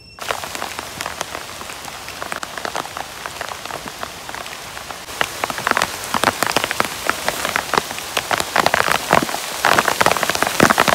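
Large plastic tarp crinkling and rustling as it is unfolded, shaken out and thrown over a stick-frame shelter. It is a dense crackle that gets louder about halfway through.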